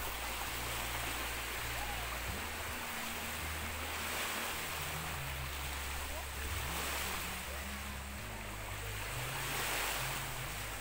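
Small waves washing in over a shallow reef flat onto a sandy shore, a steady surf wash.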